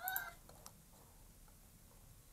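Brief high-pitched call-like sound from an autoplaying web video ad, cut off within half a second, followed by near silence with one faint click.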